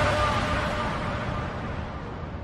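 Outro sound effect: a rushing wash of noise with a faint held tone underneath, fading away steadily.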